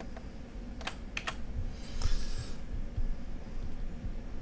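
Three quick clicks about a second in, then a short scratch about two seconds in, from a stylus and tablet: tapping, then writing a letter.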